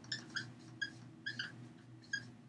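Dry-erase marker squeaking on a whiteboard while letters are written: a quick run of short, high, faint squeaks, about five or six in two seconds.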